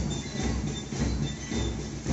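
March music with a steady bass-drum beat, about two beats a second, over outdoor crowd noise.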